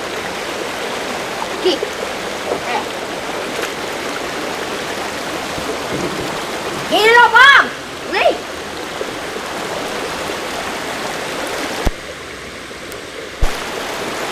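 Shallow rocky river rushing steadily over stones. A voice calls out about two seconds in and again loudly about seven seconds in, and the water sound drops away briefly between two clicks near the end.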